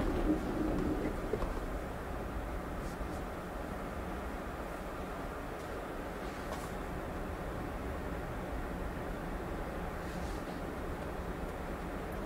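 Steady low road and tyre noise inside the cabin of a Tesla electric car driving slowly on a snow-covered street.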